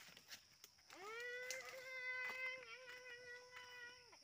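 A single long drawn-out call, about three seconds. It swoops up in pitch at the start, holds one steady note with a slight waver, and drops away at the end.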